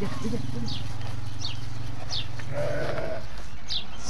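A sheep gives a short bleat about two and a half seconds in, over a steady low hum, with a few brief high chirps scattered through.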